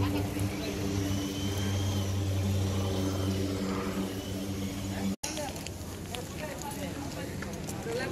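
A steady low mechanical hum, like an engine running nearby, with voices in the background. It stops abruptly at a cut about five seconds in, leaving quieter outdoor noise and voices.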